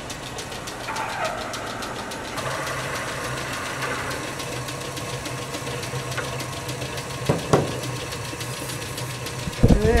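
Metal-spinning lathe running with a steady hum while a hand-levered spinning tool presses and rubs against a copper disc turning on a steel chuck, forming it into a small bowl with a bead. A single sharp knock comes about seven and a half seconds in.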